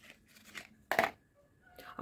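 A small cardboard cosmetics box being opened by hand and a lip gloss tube slid out of it: faint rustling with one short, sharper scrape about a second in.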